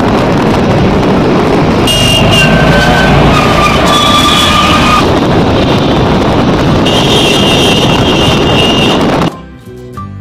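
Loud, steady road and wind noise from riding in a moving vehicle through city traffic, with horns sounding briefly at several points. It cuts off abruptly just before the end.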